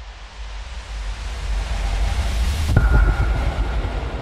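Logo-intro sound effect: a rushing noise swell that rises for about two and a half seconds to a sharp impact with a deep boom and a short ringing tone, then dies away.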